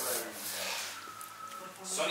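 Soft rubbing and rustling of clothing against cloth car-seat upholstery as someone climbs out of a car, growing louder near the end.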